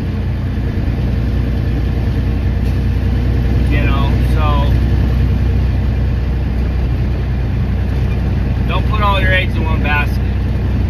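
Dump truck's diesel engine running with a steady low drone heard inside the cab. Brief bits of a man's voice come about four seconds in and again near the end.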